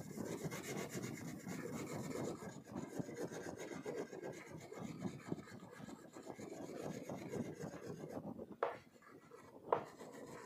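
Wax crayon rubbed back and forth over paper on a board, a continuous scratchy scrubbing as an area is filled in with colour. Near the end the rubbing thins out and two sharp ticks stand out.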